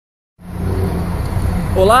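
Road traffic noise: a steady low rumble of vehicles on a busy avenue, starting about half a second in.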